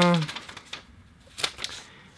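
A folded paper instruction leaflet being opened and leafed through: a few separate crisp paper clicks and rustles.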